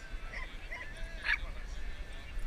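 A dog barks once, sharply, a little over a second in, over faint background voices and a low rumble.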